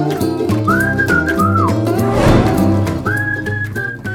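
Sitcom opening theme music: a whistled-sounding melody, with short held notes and downward slides, over a bouncing bass line. A brief swish sweeps through the music about halfway through.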